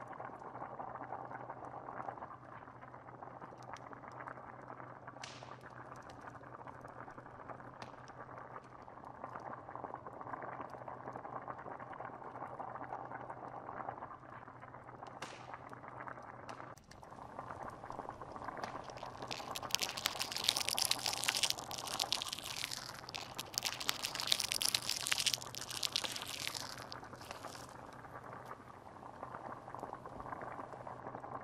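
Stew bubbling steadily in a pot over a wood fire, with a few isolated crackles and pops. About two-thirds of the way through, the fire's crackling turns louder and dense for several seconds, then eases off.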